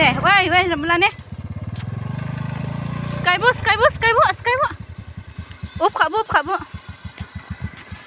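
Motor scooter engine running at low revs, its low pulsing beat slowing and fading in the second half, with a woman's voice talking over it.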